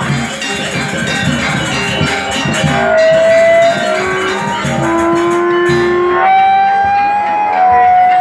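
Balinese gamelan music accompanying a mask dance: struck metal percussion and drum with crisp cymbal clashes, under long held melody notes.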